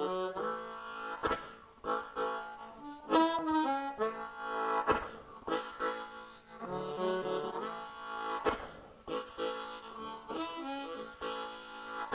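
Harmonica played in cupped hands, a blues introduction of held chords and shifting notes, with a few sharp clicks.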